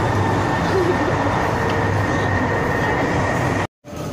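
Hong Kong MTR train heard from inside the car: a steady rumble with a thin, high, steady whine over it. The sound cuts off abruptly near the end for a moment.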